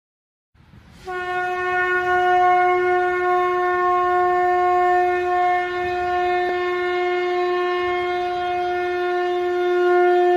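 Conch shell (shankha) blown in one long, steady note that starts about a second in and is held without a break.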